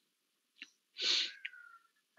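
A single short burst of breath from a person, about a second in, amid near quiet with a couple of faint clicks.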